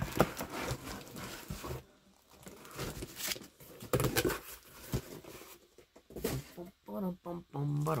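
Cardboard and plastic comic-book bags rustling as a stack of bagged comics is lifted out of a cardboard shipping box and set down on a table. Several short sharp knocks and crinkles come from the handling.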